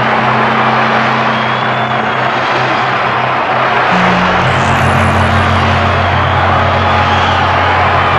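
Electronic synthesizer film score: sustained low drones that move to a new, fuller chord about four seconds in, under a dense, steady rushing wash of sound.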